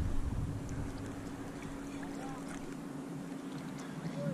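Wind buffeting the microphone and shallow seawater moving, over a steady low hum, with a couple of faint short chirps.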